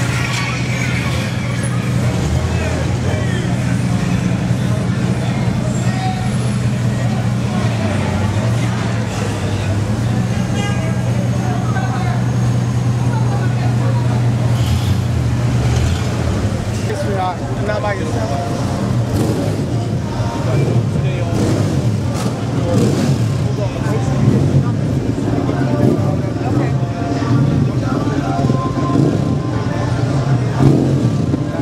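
Cars moving along a street, with a strong, steady low drone that shifts pitch in a few steps, and people's voices. About halfway through the drone gives way to unclear voices and chatter with scattered knocks.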